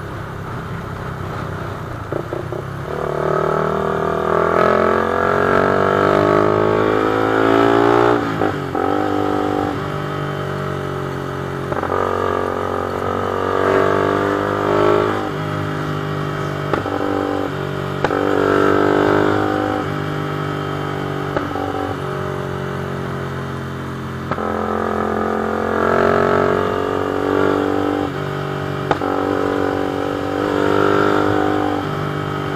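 Sport motorcycle engine heard from the rider's seat, climbing in pitch under throttle and dropping back sharply several times as the rider shifts or eases off, the first drop about eight seconds in.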